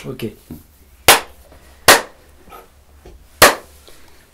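Three sharp claps, the second about a second after the first and the third about a second and a half later, each with a brief ring of room echo.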